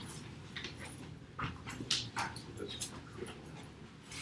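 Faint room noise with scattered short rustles and clicks.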